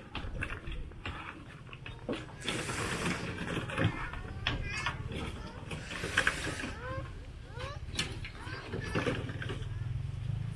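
Building-site work on a concrete-block house: scattered knocks and scrapes of buckets and tools as concrete is passed up a ladder, with faint voices. A low steady hum comes in about three seconds in, and repeated short rising chirps, like a bird's or a chick's, run through the second half.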